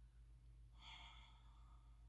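Near silence, broken about halfway through by a faint breath of under a second from the woman pausing between sentences, over a low steady room hum.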